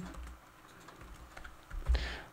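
Quiet typing on a computer keyboard: a few soft keystrokes.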